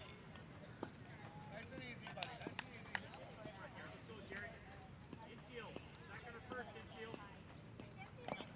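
Faint, distant voices of people chattering at a ball field, with a few faint clicks.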